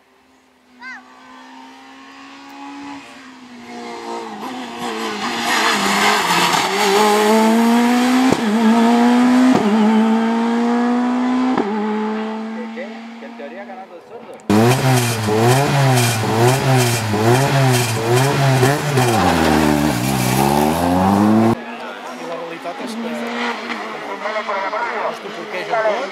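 Rally car engines at full throttle on a tarmac stage. First a car approaches and accelerates hard, climbing through the gears with quick upshifts. After an abrupt cut a second car is heard close up, its engine revs rising and falling again and again through the bends, then another sudden cut to a more distant engine.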